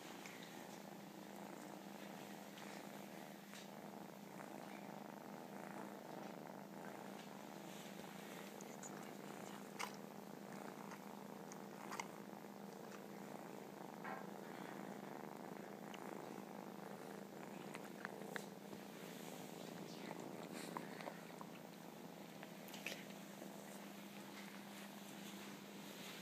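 Kittens purring steadily while nursing, with a few soft clicks scattered through.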